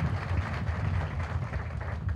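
Crowd applauding, many hands clapping at once over a low rumble.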